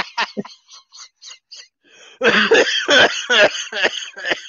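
Hearty laughter: a rapid run of laughing bursts that trails off into faint gasps, then breaks out loudly again about two seconds in, mixed with coughing.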